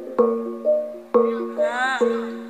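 Javanese gamelan accompaniment for jaranan: metallophones ring out a stepped melody over a sustained low note, punctuated by two sharp drum strokes about a second apart. A voice slides in over the music near the end.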